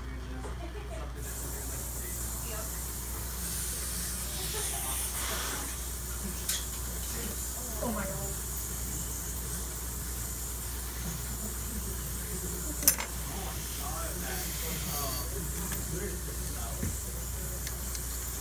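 A steady hiss over a low hum, with a single sharp click about 13 seconds in.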